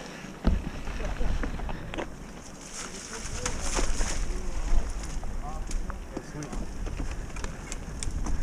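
Mountain bike rolling down a dirt trail: wind rumbling on the rider-worn camera's microphone from about half a second in, with tyres crunching over dirt and small rattles and clicks from the bike. Faint voices are heard in the middle.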